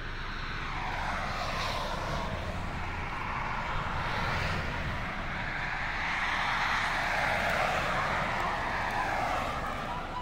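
Highway traffic going past close by: a continuous rush of tyre and engine noise that swells and fades as vehicles pass, loudest about seven to eight seconds in.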